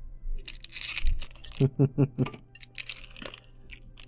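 Foil Pokémon booster-pack wrappers crinkling and rustling in irregular bursts as a mini tin is opened and the packs are taken out. A few short vocal sounds come near the middle.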